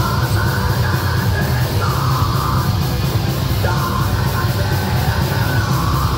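Heavy metal band playing live: distorted electric guitars, bass and drums, with shouted vocals in phrases starting at the very beginning.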